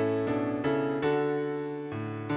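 Piano music: four chords struck in quick succession in the first second, the last left to ring and slowly fade.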